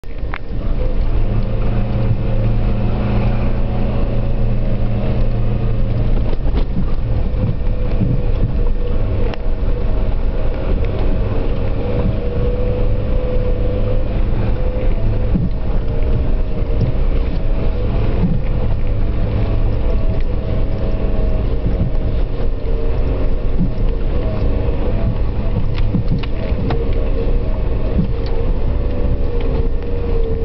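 A vehicle's engine running steadily while driving slowly over a snow-covered track, heard from inside the cabin as a low rumble with a held drone that wavers slightly in pitch. A few short knocks from the vehicle going over bumps.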